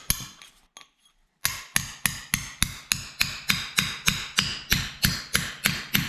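Hammer striking a metal rod held in the end of a torch-heated pipe, driving the pipe out of a concrete wall. After a pause of about a second, rapid steady blows, about three a second.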